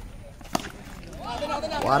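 A single sharp knock about half a second in: a wooden cricket bat blocking a tennis ball, followed by a commentator's voice.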